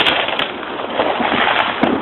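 Fireworks going off: a continuous crackle with a couple of sharper pops.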